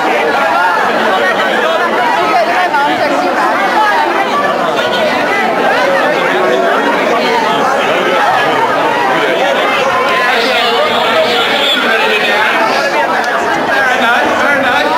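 Crowd chatter: many people talking at once, a steady din of overlapping voices with no single voice standing out.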